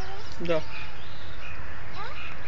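A crow cawing, with people talking.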